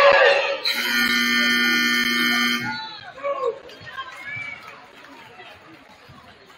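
Gymnasium scoreboard buzzer sounding one steady tone for about two seconds, starting about a second in, marking a stoppage in play, with a loud crowd cheer just before it and crowd chatter after.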